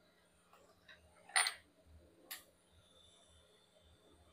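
Two small sharp clicks of hand tools against metal on a phone-repair bench, the louder about a second and a half in and a lighter one about a second later, over a faint steady hum.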